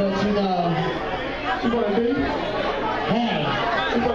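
Several people talking over one another amid crowd chatter.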